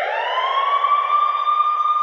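Siren-like wail opening a dance-pop track: one pitched tone that sweeps up over about half a second and then holds steady.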